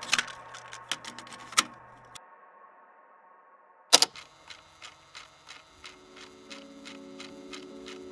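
Cassette deck: a sharp click of the play key engaging about halfway through, then the tape running with an even ticking of about four ticks a second, and soft held musical tones coming in near the end. In the first two seconds a few small clicks sound as earlier music dies away.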